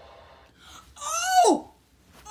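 A loud, high-pitched vocal cry from a person about a second in, lasting about half a second and sliding steeply down in pitch at the end.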